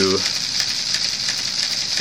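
A steady high hiss of background noise, even throughout, with no distinct mechanical event.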